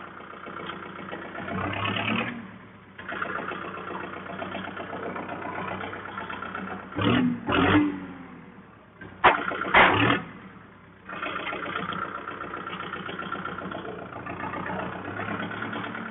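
Kubota MU4501 tractor's four-cylinder diesel engine running as the tractor is driven, with several short louder surges between steadier stretches.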